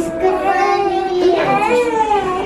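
Newborn baby crying during a bath: two long wails that rise and fall in pitch, the second starting a little past halfway.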